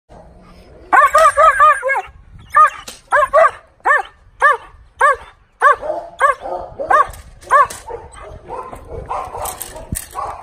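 A dog barking at an approaching decoy during protection table work. About a second in comes a quick run of around five barks, then single barks about two a second until near the end, when it quietens.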